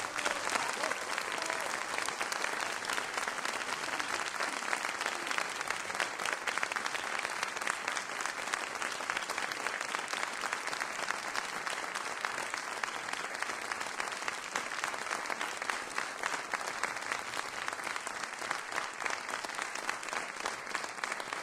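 Audience applause, a dense and steady clapping.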